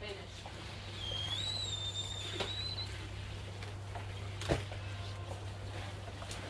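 A high whistled note, slightly wavering and rising at the end, lasting about two seconds, then two short knocks, one about halfway through and one near the end, over a steady low hum.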